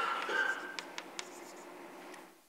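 Chalk writing on a blackboard: a louder scratchy stroke in the first half-second, then a couple of light taps as the chalk meets the board.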